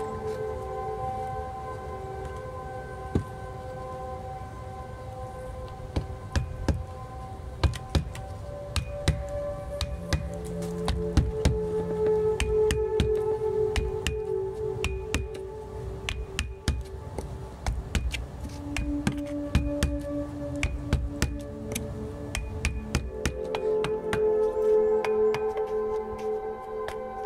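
Ambient background music with held tones, over sharp, irregular knocks of a hatchet working on wood. The knocks come thickly from about six seconds in.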